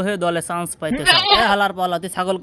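A man's voice speaking in a comic dub, with a short bleat lasting about half a second, about a second in.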